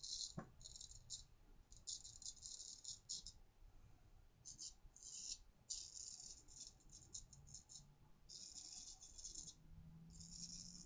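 An H. Elshaw & Sons 6/8 round-point straight razor scraping whiskers off a lathered neck. It makes a faint, crisp rasping in quick clusters of short strokes, with brief pauses between the passes.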